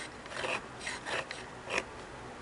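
Steel bobbin slide plate of a Singer 403A sewing machine being slid along the machine's freshly cleaned aluminium bed, making a few short scraping strokes. The steel-on-aluminium slide is still a little rough after the cleaning, with its spring tension screw just tightened.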